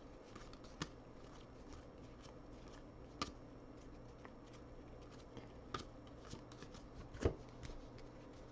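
2019 Donruss baseball cards flipped and slid one over another by hand as a stack is sorted, with a few short clicks of card edges, the loudest a little before the end, over a faint steady hum.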